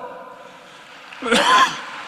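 A man gives a short throat-clearing cough into his fist, about a second in.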